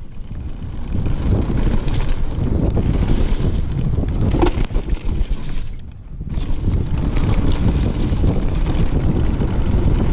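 Wind buffeting the microphone of a camera on a mountain bike descending a dirt trail at speed, over a steady rumble from the tyres on the ground. The noise briefly drops away about six seconds in, then returns.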